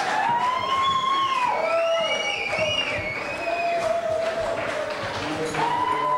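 Concert crowd noise in a hall, with a series of long, wavering, pitched notes held over it one after another.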